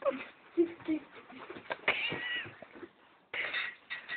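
A short high-pitched call, like a meow, about two seconds in, amid low voice sounds and scattered knocks and rustles.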